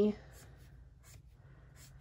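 Faint, short, scratchy strokes of a marker drawing on paper, coming in an irregular run.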